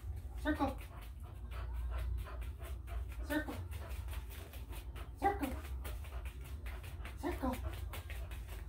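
A Shar-Pei dog whining in four short cries a second or two apart, each bending up and down in pitch, over a steady low hum.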